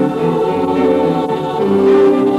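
Music: a choir singing held chords that change slowly.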